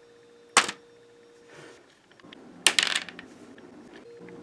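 Hard plastic LEGO pieces clicking and clattering as they are handled and moved: one sharp click about half a second in and a quick cluster of clicks near the end, over a faint steady hum.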